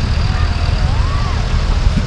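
Wind buffeting the microphone: a loud, steady low rumble. A faint tone glides up and then down over about the first second and a half.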